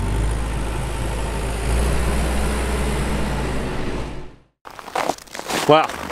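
Combine harvester engine running steadily with a deep hum, fading out about four seconds in.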